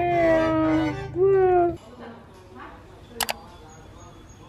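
A drawn-out whining vocal call, held and sliding slightly down, followed by a shorter call that rises and falls; a quick double click about three seconds in.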